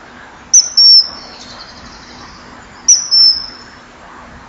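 Common kingfisher calls: two loud, shrill, high whistles about two and a half seconds apart, each a short note followed at once by a longer one.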